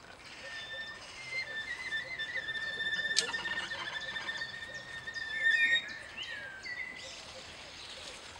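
Cello bowed high up: one held note with a fainter tone above it, a sharp click about three seconds in, then sliding pitch that is loudest near the end before it fades.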